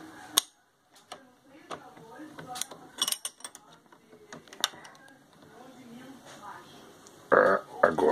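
Scattered metal clicks and clinks as an open-end wrench is fitted onto a reloading press's powder-measure lock nut and worked to tighten it. The nut had worked loose and left the powder measure wobbling. A voice comes in near the end.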